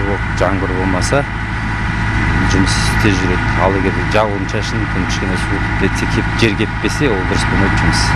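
Road roller's diesel engine running steadily at a constant speed, a low even hum under a man speaking in short phrases.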